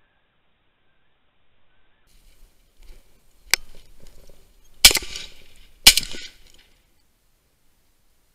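Two shotgun shots about a second apart at a flushed snipe, both missed, each trailing off in a short echo. A sharp click and some rustling come just before them.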